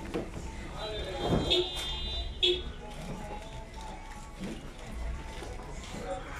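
Shop ambience of indistinct voices at a counter, with a brief high-pitched beeping tone from about one to two and a half seconds in.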